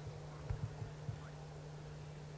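Faint steady low hum with a few soft, short low knocks.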